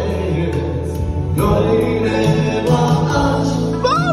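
Live band music over PA speakers: a man singing with a microphone over electronic keyboard accompaniment with a steady bass line.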